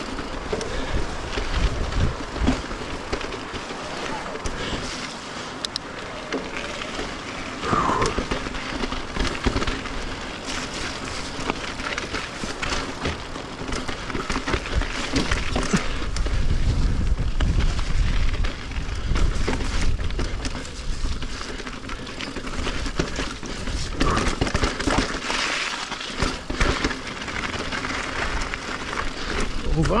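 Vitus E Sommet e-mountain bike rolling down a rocky, gravelly trail: tyres crunching over stones and the bike rattling, with frequent sharp knocks, under the rumble of wind on a bike-mounted action camera. It gets louder about halfway through and again near the end.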